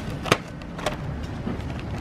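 Cardboard doughnut box being handled: a sharp tap about a third of a second in and a lighter one just before the middle, over a low steady rumble.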